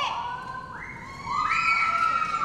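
High-pitched cheering shouts from audience members, two or three long held voices overlapping, one gliding up in pitch under a second in and another joining a little later.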